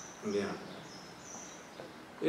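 Faint, short, high-pitched bird chirps, each an even whistle of about a quarter second, three of them over steady room noise, with a brief spoken 'yeah' near the start.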